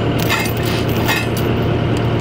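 Kubota track skid steer's diesel engine running steadily, with a few short metallic clinks of a steel chain being handled against the forks.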